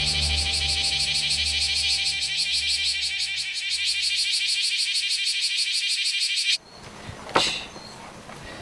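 Cicada singing: a loud, high, fast and even pulsing buzz that cuts off abruptly about six and a half seconds in. A single sharp thump follows near the end.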